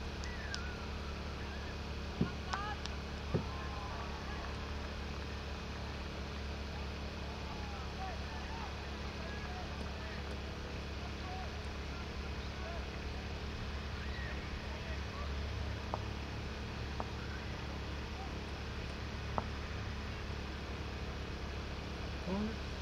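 Open-field ambience: a steady low rumble with many faint, short distant calls, and a few sharp clicks or knocks, one about two seconds in, one just after three seconds and one near the end.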